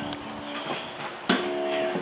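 Acoustic guitar: a couple of quiet plucks, then a chord struck just past halfway and left ringing.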